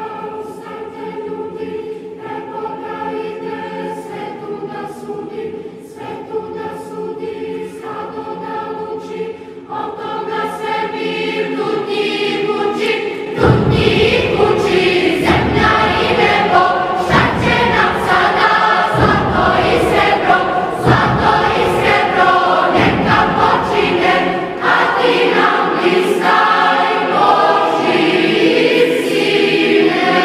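A choir singing a Christian hymn in a South Slavic language, restrained at first, then swelling fuller and louder with deep low voices about thirteen seconds in.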